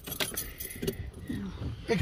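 A bunch of keys jingling, with a scattered run of light clinks and knocks as they are handled.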